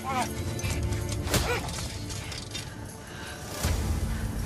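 Dramatic film score with a low sustained bed. Over it a man gives two short cries, one at the very start and another about a second and a half in.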